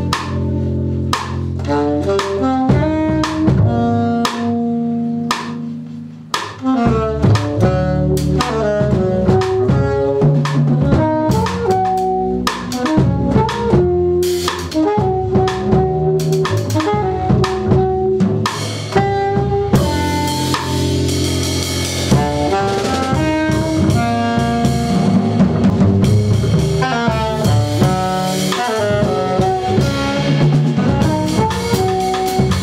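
Live jazz trio playing: alto saxophone carrying the melody over upright bass and drum kit. The band thins out briefly about six seconds in, then comes back fuller, and the cymbals wash louder over the last third.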